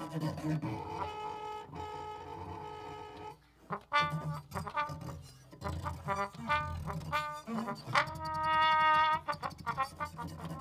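Trombone and bowed cello in free improvisation. A held note gives way to short, broken notes from about four seconds in, then a loud sustained note near the end, over low bowed cello tones.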